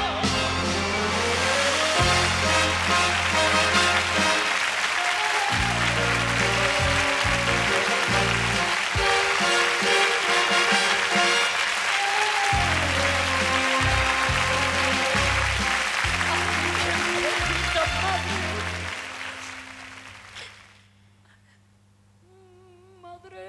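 A studio audience applauding over the band playing the closing bars of a copla. The clapping and music fade out together a couple of seconds before the end.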